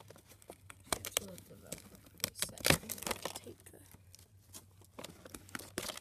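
Velcro fastener on a homemade foam-board doll fridge door ripping apart as the door is pulled open, with a series of sharp crackling rips and handling clicks, loudest near the middle.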